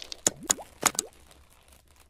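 Intro sound effect for an animated logo: four quick, sharp pops in the first second, the stronger ones each trailed by a short upward-sliding tone, then fading away.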